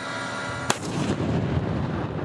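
M1 Abrams tank driving across dirt: a dense, rough rumble of engine and tracks, with one sharp crack about a third of the way through.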